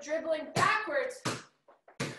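A woman's voice, then a basketball dribbled on a tile floor: a sharp bounce about a second in and another near the end.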